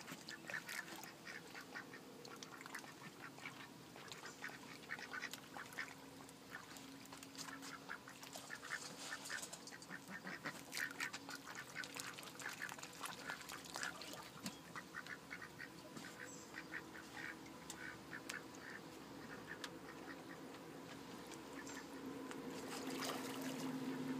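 White domestic ducks quacking softly in quick runs of short calls, busiest around the middle of the stretch.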